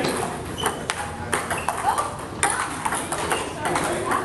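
Table tennis balls clicking off tables and paddles in quick, irregular strikes from several games at once, with people talking in the background.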